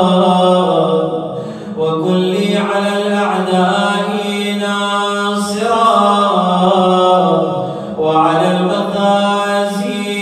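A solo male voice chanting an Arabic Shia supplication (munajat) in a melodic recitation style, holding long ornamented notes. The voice breaks off briefly twice, about two seconds in and near the eighth second.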